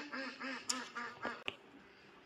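Domestic ducks quacking in a quick run of short calls, about five a second, that tails off a little past a second in. Two sharp clicks are heard among the calls.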